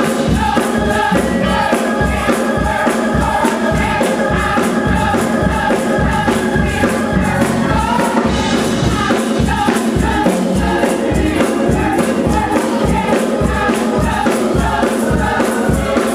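Gospel choir singing with accompaniment over a steady, pulsing beat.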